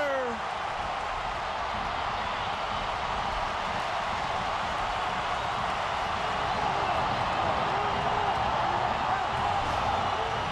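Large stadium crowd cheering a last-minute equalizing goal, a steady wall of noise that swells a little in the second half.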